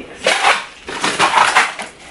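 Dishes and utensils clattering in two bursts, a short one early and a longer one about a second in.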